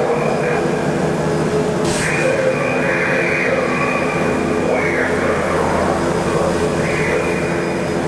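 Dark ambient synthesizer intro: a steady drone of layered sustained tones with slowly sweeping noise above it, and a sharp whoosh about two seconds in.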